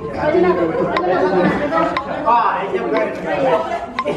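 A group of people talking over one another in a large room, steady overlapping chatter, with a short sharp click about once a second.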